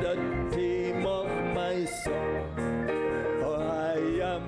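Gospel music: a man singing a hymn with instrumental accompaniment.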